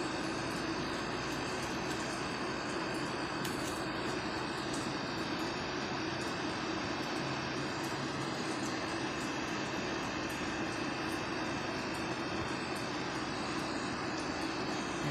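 Steady background hum and hiss with no distinct events. It holds an even level, with a low drone and a few faint high steady tones.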